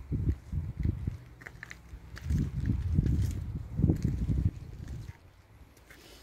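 Wind buffeting the phone's microphone in irregular low rumbling gusts, dying down about five seconds in.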